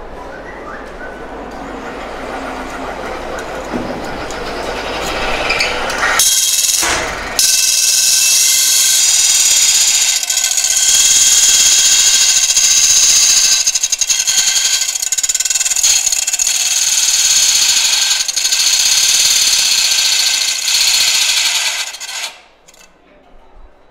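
Pedal-powered, belt-driven cutting disc grinding into metal: a loud, steady, high-pitched screech as the workpiece is pressed against the spinning disc, throwing sparks. For the first few seconds the machine spins up and grows steadily louder; after a brief break about six seconds in, the grinding runs on and cuts off suddenly at the end.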